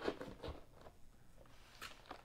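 Faint rustling and a few light ticks of hands handling a cardboard trading-card box and the wrapped rack packs inside it.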